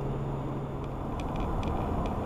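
Car driving on a road, heard from inside the cabin: a steady rumble of road and engine noise. A low hum fades out a little under a second in, and a few faint ticks follow.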